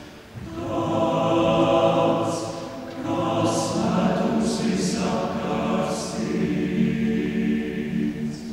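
Male choir singing sustained chords in phrases, with brief breaks between phrases just after the start and about three seconds in, and crisp 's' sounds of the sung words several times.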